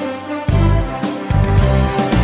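Intro theme music with a heavy bass line that drops out briefly and comes back, over held pitched tones.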